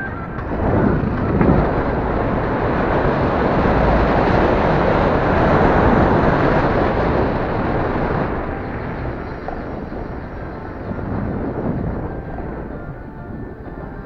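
Wind and road noise while riding an electric scooter, swelling over the first few seconds and easing off after about eight seconds.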